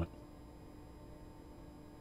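Faint room tone with a steady low hum; no hammer strikes or other events.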